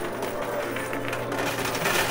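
Coin pusher machine running, with quarters shifting and clinking faintly on the playfield over a steady low hum.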